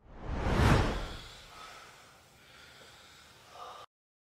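A whoosh transition sound effect that swells to a peak just under a second in, then fades away into a faint hiss.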